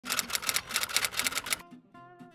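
Typewriter key clacks in a quick run of about eight strokes a second, stopping about one and a half seconds in. Faint plucked guitar notes follow near the end.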